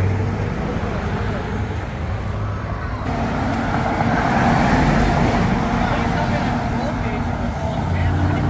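Compact track loader's diesel engine running as the machine creeps along, with a steady low hum that grows louder and harsher from about three seconds in.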